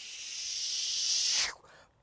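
A whooshing hiss that swells louder for about a second and a half, then cuts off suddenly.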